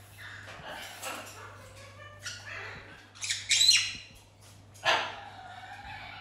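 Caique parrot squawking in short harsh calls, the loudest about three and a half seconds in and another about five seconds in.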